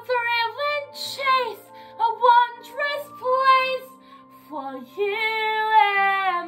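A woman singing a melodic line in phrases, with a brief pause about four seconds in, over a sustained low accompaniment.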